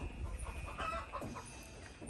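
Chickens clucking faintly in the background, a few short calls about a second in.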